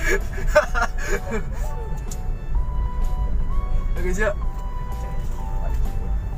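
Steady low rumble of a moving car heard from inside the cabin of a 2016 Toyota Avanza Veloz 1.5 automatic. A faint, simple tune of held tones that step up and down in pitch plays over it from about two seconds in.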